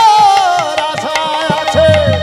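Bengali kirtan music: one long, slowly falling melody note held over hand-drum strokes, whose low notes bend downward near the end.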